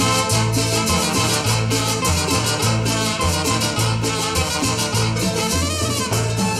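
Live cumbia band playing: trumpets over a stepping upright-bass line, guitar and an even percussion pulse.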